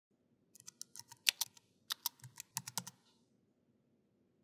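Computer keyboard typing: a quick, uneven run of keystroke clicks that stops about three seconds in, matching text being typed into a search bar.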